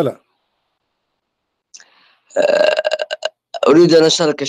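Speech only: a short 'hello', then about two seconds of dead silence, then a caller's voice coming in choppy and buzzy over an internet call line.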